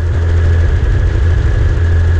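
Helicopter in flight heard from a camera mounted on its fuselage: loud, steady rotor and engine noise with a deep pulsing hum and a thin high whine over it.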